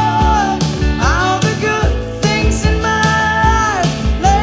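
Live rock band playing: a woman sings a sliding vocal line over drums, bass and guitar, holding one long note near the end before letting it fall.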